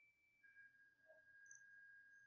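Near silence, with only a faint steady high tone.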